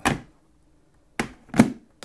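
Three short, sharp knocks as a motorcycle helmet's shell is handled on a table. The last one, near the end, is the loudest.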